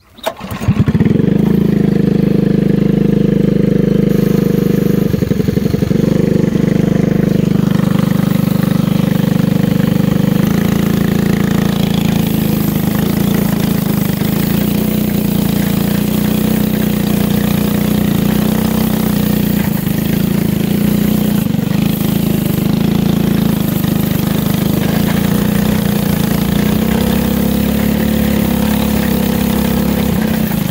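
Small go-kart engine running steadily with a constant note. It comes in suddenly about a second in.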